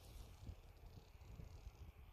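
Near silence: faint night-time outdoor room tone with a soft hiss and irregular low thumps from the phone being handled as it pans.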